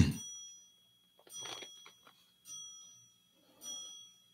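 A small bell struck four times, about once every 1.2 seconds. The first stroke is the loudest, and each stroke rings on with the same high, clear tones before fading.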